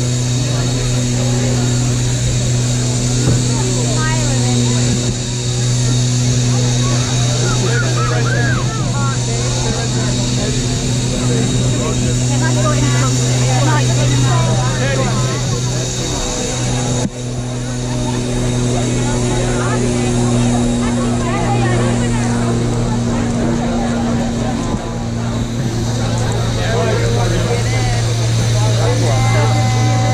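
Crowd of many people talking at once all around, over a steady low hum and a constant hiss.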